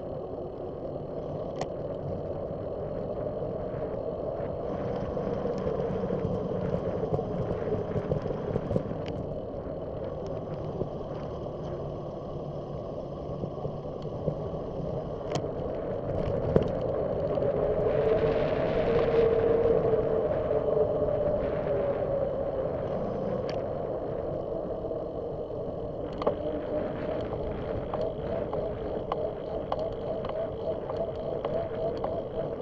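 Riding noise picked up by a bicycle-mounted camera: steady tyre rumble on pavement and wind on the microphone, with a few sharp clicks from bumps. The noise swells to a louder rush about eighteen seconds in.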